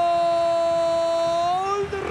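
A male football commentator's drawn-out goal cry, one long held "goool" at a steady pitch that lifts slightly just before it breaks off near the end.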